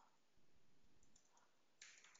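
Near silence with a few faint computer keyboard key clicks as text is typed.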